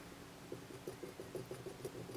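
Faint, rapid clicking of a metal post being screwed by hand into a fly tying vise's pedestal base, about five small ticks a second as the threads turn.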